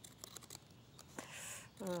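Scissors making a few quiet snips through a cardstock postcard, followed by a brief soft papery rustle about a second and a half in.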